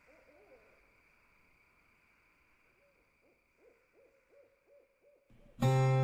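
Faint night-ambience sound effect of an owl hooting in short series over a steady high drone. Near the end, guitar music comes in loudly.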